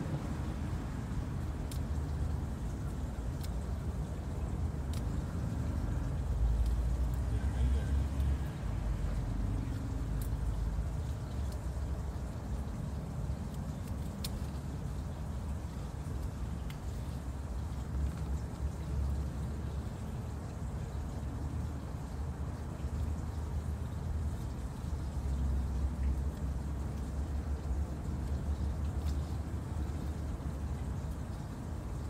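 Steady low rumble of outdoor background noise, with faint scattered clicks as garden greens are snipped off their stems by hand.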